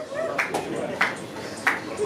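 Three sharp clicks at an even beat, about two every second and a half, typical of a drummer's stick count-in before a song. Crowd chatter runs underneath.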